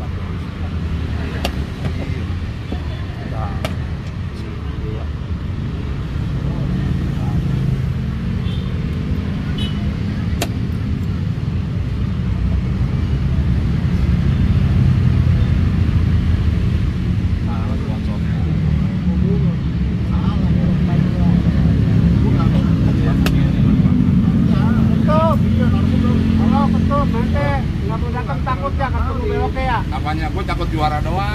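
A steady low rumble like a running engine, with a few sharp clicks. Voices talking grow clearer near the end.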